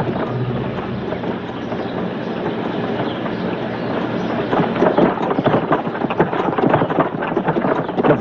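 Horse-drawn carriage and people on foot moving along a dirt road: a rumbling clatter of hooves, wheels and footsteps, getting louder and busier about halfway through.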